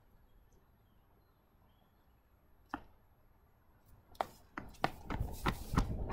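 Near quiet for about four seconds apart from a single click, then a quick series of thuds from running shoes striking asphalt as a sprinter drives off from a push-up start, with a rush of noise growing over the last second or two.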